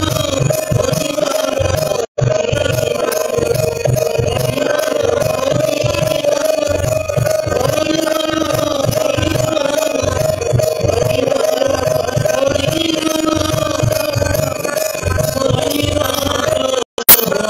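Live Bengali devotional song: a harmonium holds a steady drone under voices singing, over a rhythmic low beat. The sound cuts out for a moment about two seconds in.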